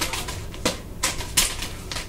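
Nunchaku being swung around the body and caught: a series of quick, sharp swishes and slaps, about four in two seconds, the loudest about one and a half seconds in.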